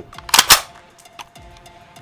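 Two sharp metallic clacks, about a sixth of a second apart, from the action of a KP9 9 mm AK-pattern pistol being worked by hand. Faint background music plays under them.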